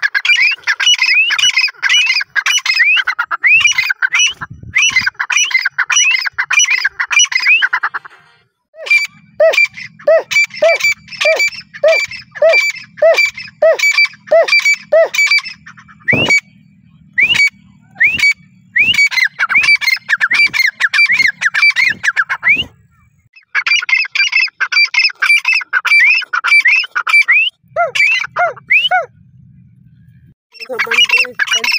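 Grey francolin (teetar) calling loudly: fast series of short rising calls, three or four a second, in several bouts with brief pauses. A lower-pitched series of calls runs alongside in two of the bouts.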